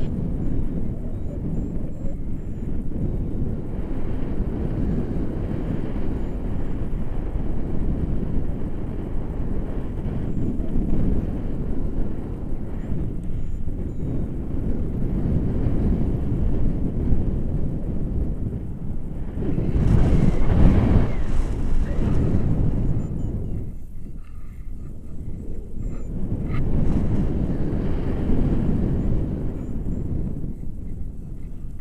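Wind rushing over the camera microphone in gliding flight: a steady low rumble, with a stronger gust about twenty seconds in that briefly drops away afterwards.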